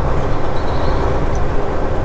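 Semi-truck's diesel engine running at low speed, heard from inside the cab: a steady low drone with road noise over it.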